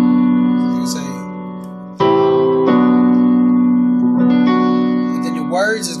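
Yamaha digital keyboard on a piano voice: a held G major seventh chord (G, B, D, F sharp) rings and fades. About two seconds in a new chord is struck and held, with more notes added twice after it.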